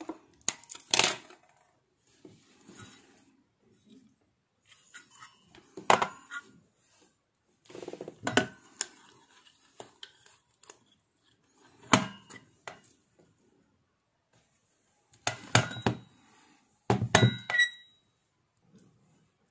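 Sharp snips and clicks of wire cutters trimming component leads, with metallic clinks and knocks as the aluminium heatsink assembly is handled. They come in short clusters every few seconds, with a brief metallic ring near the end.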